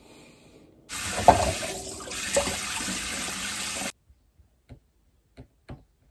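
Running water, like a tap into a sink, for about three seconds, starting and cutting off abruptly. A few faint light clicks follow.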